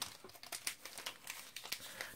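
Brown corrugated paper gift wrapping crinkling and rustling quietly in irregular crackles as the wrapped package is handled.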